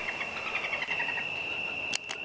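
A bird's quick run of short chirps, about eight a second, fading out after about a second, over a steady high-pitched tone.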